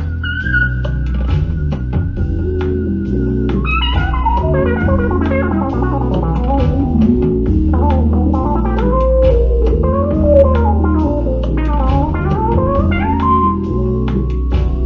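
A groove-based studio track: a deep, steady bass line under looped percussion, with synth and keyboard parts on top. About four seconds in, a held high tone gives way to several bending, gliding synth lines.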